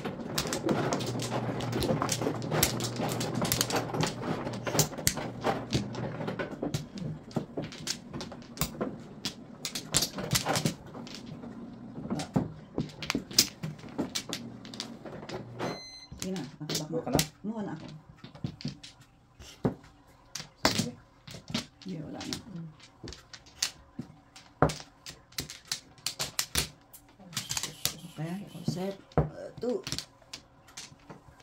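Mahjong tiles clacking against one another and the table as players draw, discard and arrange them: many sharp, irregular clicks throughout, under a murmur of voices that is loudest in the first several seconds.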